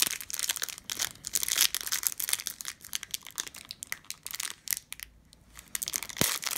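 Stiff plastic wrapper of a Panini Prizm hanger pack crinkling and crackling as fingers peel it off a stack of trading cards, in irregular crackles that ease off briefly near the end.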